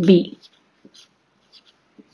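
Marker pen writing on paper: a few faint, short scratching strokes.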